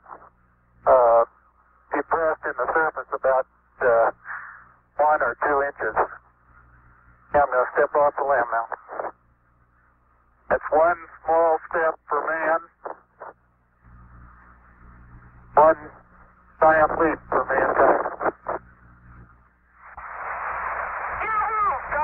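An astronaut's voice over a narrow-band space-to-ground radio link, in short phrases with pauses between them, over a steady low hum. Radio hiss swells up under the voice near the end.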